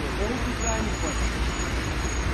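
Steady low traffic rumble on a wet road, with faint voices talking in the first second.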